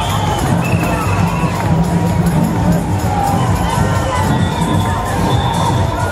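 Large parade crowd cheering, whooping and shouting continuously, many voices overlapping, over music with a steady low beat.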